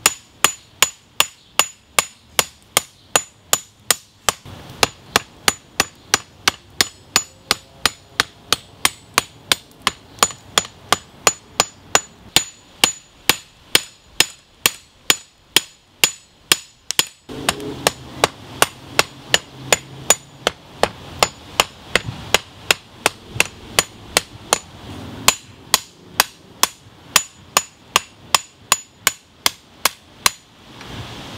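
Hand hammer striking red-hot leaf-spring steel on a steel block anvil in a steady rhythm of about two to three blows a second, each blow with a short high metallic ring. The blows are flattening out the curve that forging the edge bevels has put into the seax blade.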